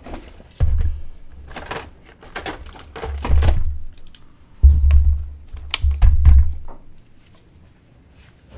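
Dull thumps and clattering handling noises of work on a bench, in several irregular bursts, with one short high electronic beep past the middle.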